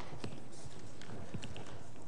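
Handling noise from a microphone being passed from one person to another: scattered light clicks and knocks.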